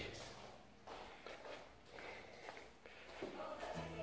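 Soft footsteps going down an indoor staircase, a few spaced steps.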